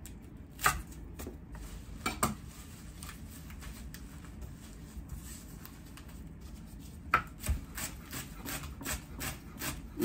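Chef's knife chopping fresh cilantro on a wooden cutting board: a few scattered knocks at first, then a steady run of chops about two a second from about seven seconds in.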